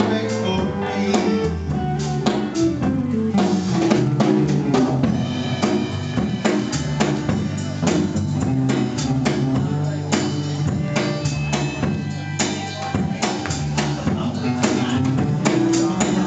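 Live country band playing an instrumental passage: drum kit keeping a steady beat under guitar.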